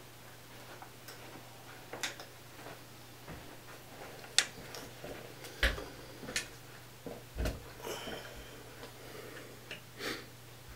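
Scattered, irregular clicks and knocks from someone moving about and handling things off-camera, the sharpest about four and a half seconds in, over a faint steady low hum.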